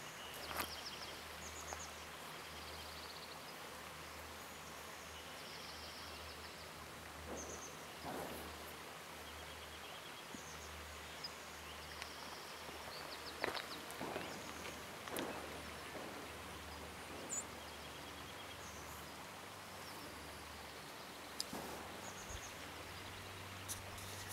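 Quiet outdoor ambience in the woods: small birds give short, high chirps and trills now and then over a faint steady hiss and low hum, with a few soft knocks.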